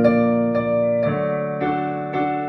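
Yamaha Clavinova digital piano playing slow, sustained chords, with a new chord struck about halfway through.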